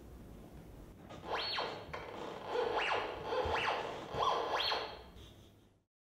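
Electronic stage sound effects: about five quick swoops that each climb sharply in pitch, over a faint steady tone, fading out near the end.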